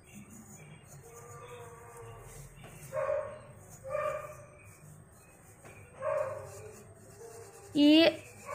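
Three short animal calls in the background, the first two about a second apart and the third about two seconds later. Under them runs faint rubbing.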